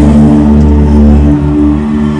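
Loud live concert music: a sustained low synth and bass chord held steady, with no singing.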